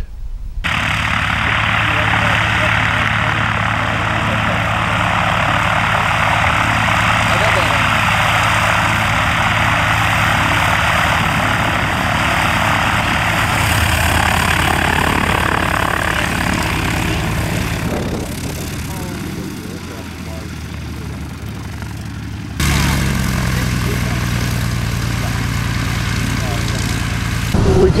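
Single-engine propeller tow plane's engine running steadily as the plane taxis, with a thick propeller drone. It fades somewhat after about 18 seconds. About 22 seconds in, a sudden change brings it back steady and deeper.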